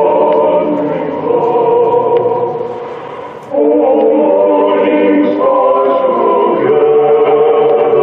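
A choir singing slow, sustained chords. A phrase fades away about three and a half seconds in, and a new phrase starts loudly right after.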